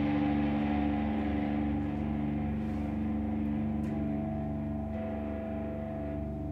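Electric guitar holding a sustained, droning chord that slowly fades, with a higher note joining about four seconds in.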